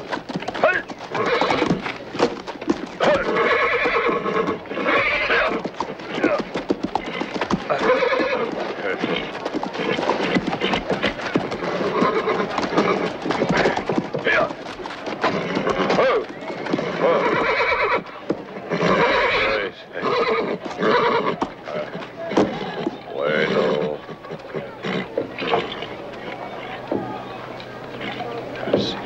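A horse whinnying again and again and stamping its hooves as it rears and fights against a rope. The calls grow fewer near the end as it settles.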